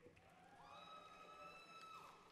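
Faint, distant high-pitched cheer from someone in the audience, a single call held steady for about a second, over otherwise near-silent hall tone.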